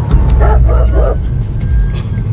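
Police dog barking a few short times in the back of a moving dog van, over background music.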